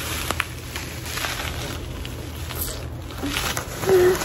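Plastic bubble wrap rustling and crinkling as it is handled and pulled out of a cardboard box, with scattered small clicks.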